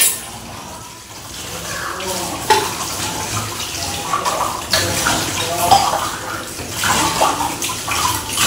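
Cooking pots being washed by hand under running water, with a few sharp clanks of metal pots and pans knocking together.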